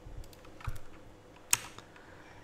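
Quiet clicks from a computer keyboard and mouse, with a couple of soft thumps and one sharper click about one and a half seconds in.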